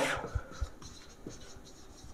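Marker pen writing on a whiteboard: faint scratching strokes with a couple of soft taps.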